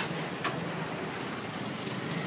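A steady low hum with a hiss over it, and one faint click about half a second in.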